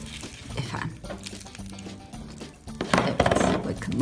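Styrofoam-bead slime (floam) crackling and clicking as it is squeezed and kneaded by hand, over steady background music.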